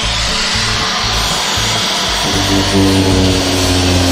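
Angle grinder running with its disc pressed into layered cardboard, giving a loud, steady grinding noise.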